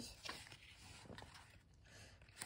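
Faint rustle of a picture book's paper page being turned by hand, loudest in the first half-second, followed by a soft tick or two and then near silence.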